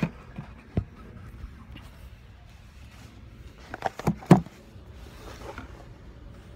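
A few knocks and bumps of a phone camera being handled and set down on a surface, with a louder cluster of sharp knocks about four seconds in.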